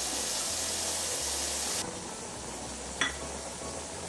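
Steady hiss of sauce and water simmering in an electric cooking pot, a little softer after about two seconds, with one short click about three seconds in.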